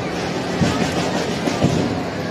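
Live band music with drums: a steady held low note, with a drum hit about once a second over a clattering rhythm, under crowd noise.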